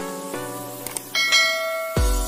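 Background music of sustained notes with a small click just before a second in, then a bright bell chime from a YouTube subscribe-and-notification-bell animation.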